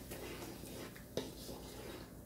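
Thick onion, tomato and yogurt masala frying in a pan while being stirred with a wooden spatula: a faint sizzle and scrape, with one short knock about a second in.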